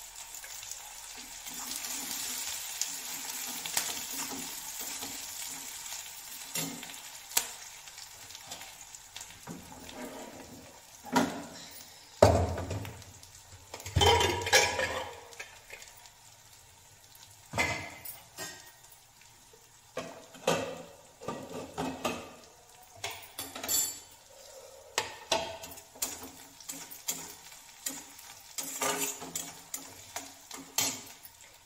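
Spices frying in mustard oil in a metal kadai, sizzling steadily for the first several seconds. A couple of loud heavy clunks of pots being handled come around the middle. Through the second half a metal spatula scrapes and clinks against the pan in short repeated strokes.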